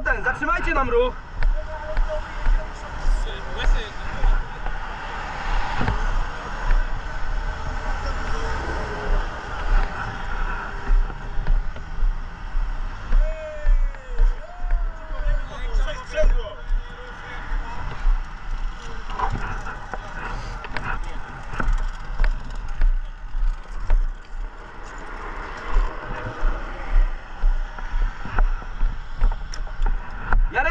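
Bustle of a motorway rescue heard through a body-worn camera: indistinct voices and radio chatter, knocks and rustling as the wearer moves and handles a car, over a steady rumble of traffic and wind.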